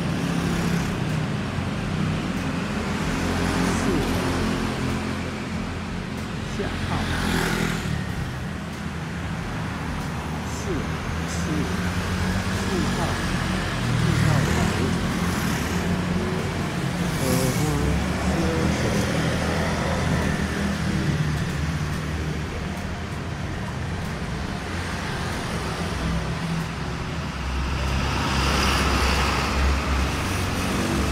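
City street traffic: motor scooters and cars passing, a steady low rumble with several vehicles swelling past, one of the loudest near the end.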